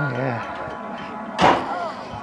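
Voices, with one short sharp knock about one and a half seconds in.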